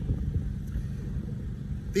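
Low, steady rumble of city background noise, with no distinct events.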